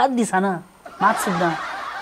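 A man's voice speaks a few syllables, then about a second in breaks into a breathy chuckle.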